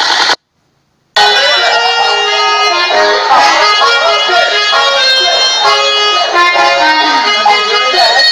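Loud party music with held melodic notes and a voice over it; it cuts out to silence for under a second near the start, then comes straight back.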